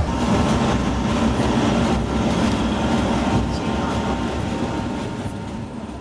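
Rumble and rattle of an open-backed pickup taxi (songthaew) heard from the passenger bed while it drives, with engine, road and wind noise mixed together. The sound fades out near the end.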